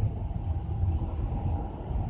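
Steady low rumble inside a car's cabin, the car's engine running.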